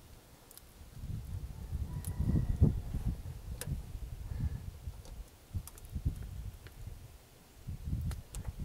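Hand grease gun being worked on the grease fittings of a truck's rail-wheel gear: a faint low rumble with uneven surges and a few light metal clicks.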